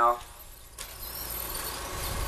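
Electric RC short-course trucks running on a dirt track: motor whine and tyre noise as a steady rush that comes in suddenly just under a second in.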